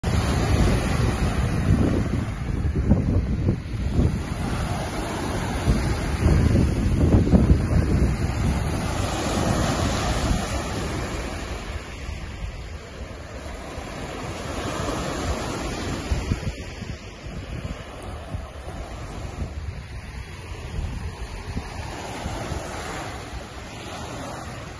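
Small lake waves breaking and washing up a sand-and-pebble beach, in repeated surges. Wind gusts buffet the microphone with a heavy rumble through the first half, then ease off.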